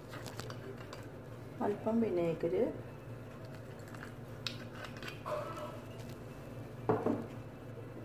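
Light clinks and taps of bowls and utensils being handled on a tabletop, a few short clicks, with a brief spoken phrase about two seconds in.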